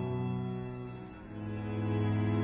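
Classical music played on bowed string instruments: sustained low chords that ease off a little past a second in, then a new chord swells up.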